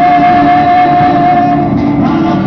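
Live band music: strummed acoustic guitars and a bass drum, with one long held high note over them that stops shortly before the end.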